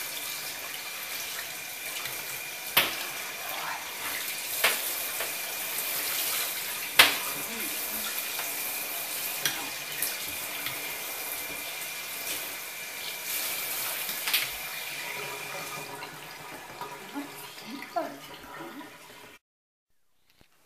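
Handheld shower head spraying water over a wet cat in a bathtub: a steady hiss of running water with a few sharp knocks, easing off about three-quarters of the way through.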